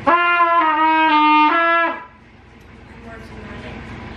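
A beginner playing a trumpet, sounding one loud blown tone for about two seconds. The pitch steps slightly down twice, comes back up, then stops.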